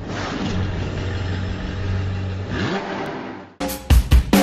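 Car engine idling with a steady low rumble, blipped once in a short rising rev about two and a half seconds in, then cut off abruptly as drum-led music starts near the end.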